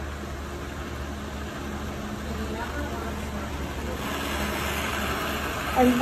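Jeweler's gas torch flame running with a steady hiss while it heats a gold button on a charcoal block. The hiss grows louder and brighter from about four seconds in.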